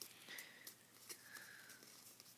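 Near silence: faint ticks and soft rustles of a sheet of paper being handled and creased by hand, with a couple of faint high squeaks.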